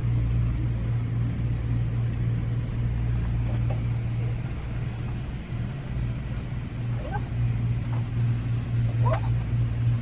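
A steady low hum fills the shop, with a few faint, brief higher sounds in the second half.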